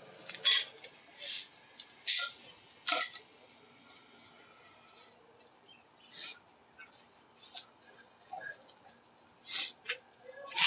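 Steel bar clamps with wooden screw handles being set and tightened onto a wood block over a heated PVC pipe handle: a series of short, irregularly spaced scrapes and squeaks of metal sliding and the screw turning, several in the first few seconds and more near the end.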